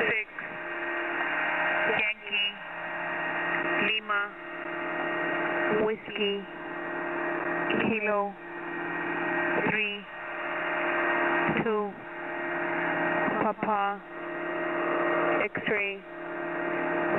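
Shortwave single-sideband radio static on the 8992 kHz HFGCS channel. It pulses about every two seconds: the hiss swells, then drops out sharply with a short gliding tone.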